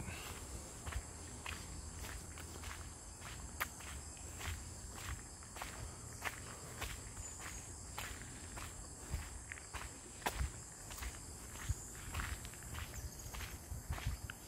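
Footsteps crunching on a gravel road at a steady walking pace, about two steps a second.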